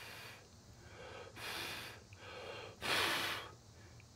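A man blowing three short puffs of breath, the third the loudest.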